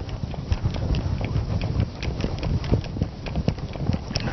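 Whiteboard duster scrubbing across the board in quick, irregular back-and-forth strokes: a fast run of rubbing knocks.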